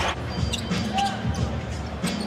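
A basketball being dribbled on a hardwood court: a series of bounces, with faint voices behind.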